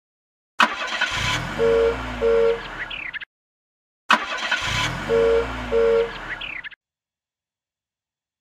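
Cartoon car sound effect played twice in a row: an engine revving up and back down, with two short beeps of a two-note horn in the middle of each pass.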